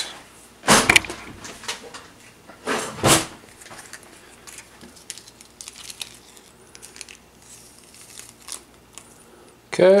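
Small plastic mould tray and foil sauce packet being handled on a wooden table: two louder knocks in the first few seconds, then light ticks and rustling.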